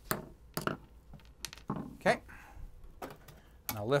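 Sheet-metal shield cover of a DiscoVision PR-7820 videodisc player being handled and freed from its foil tape: five or six light metallic knocks and clanks, irregularly spaced, with a short rustle among them.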